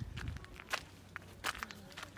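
Footsteps on sandy, stony ground: a few soft, irregularly spaced steps.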